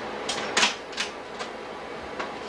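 Slide projector clicking: about four short, sharp mechanical clicks in under two seconds, the second the loudest, as a slide is changed and settled.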